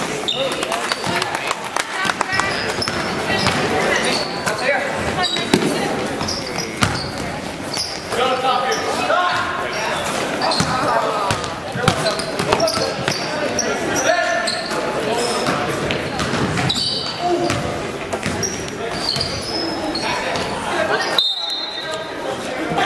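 Basketball game sounds in a gymnasium: the ball bouncing on the hardwood floor, with shouting voices, echoing in the large hall.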